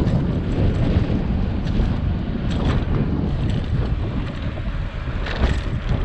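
Wind buffeting the microphone of a camera on a moving bicycle, a steady low rumble, with a few faint clicks.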